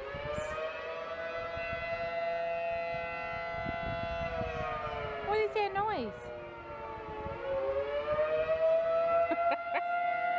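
Outdoor civil-defence warning siren wailing on one sustained pitch during its routine monthly test. Its pitch and volume sag a little about six seconds in, then swell back up.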